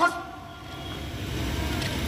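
Open-air background noise with a low rumble, and a faint held tone that fades out after about a second and a half.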